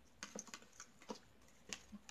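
Tarot cards being handled and shuffled by hand: about five light, irregular clicks and taps of card stock.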